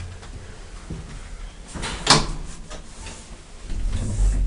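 Elevator door moving and shutting with a sharp knock about halfway through, followed by a few lighter clicks.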